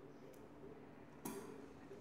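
Near-silent room tone with one short, faint click a little over a second in: small scissors snipping a strand of cotton crochet yarn.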